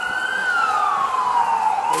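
Emergency-vehicle siren in a slow wail: the pitch rises to a peak about half a second in, falls slowly for over a second, then begins to rise again near the end.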